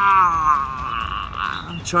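A man's voice making one long, slowly falling roar-like sound effect, acting out the figure bursting out of its box.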